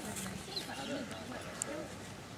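Background chatter of several people talking at a distance, overlapping and indistinct.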